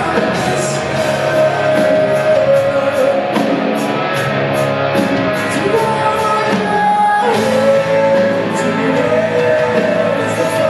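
Rock band playing live in a concert hall: electric guitars, bass guitar and a drum kit, with regular cymbal strokes over the top.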